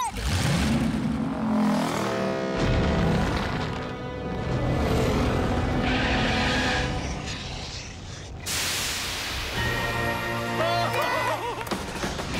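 Cartoon soundtrack: dramatic music with a deep boom at the start and a loud rushing surge about eight and a half seconds in, set to an animated lava flow. Short vocal cries come near the end.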